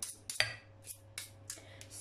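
A spoon stirring thick cake batter in a glass bowl, scraping and clicking against the glass in quick strokes, about three or four a second.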